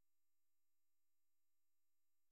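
Near silence, with only very faint steady tones.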